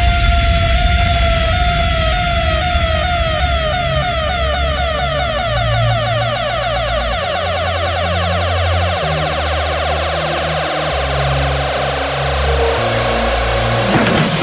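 Electro dance track in a breakdown: a long sweeping synth tone sliding in pitch over held bass notes that change every second or two, with no drum beat until just after the section ends.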